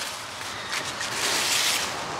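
Large squash leaves and vines rustling and crackling as a hand pushes through them, loudest about a second and a half in.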